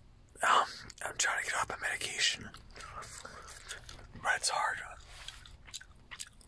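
Close-miked whispering with gum chewing. The whispered phrases start about half a second in and come in short runs, with a quieter lull in the middle.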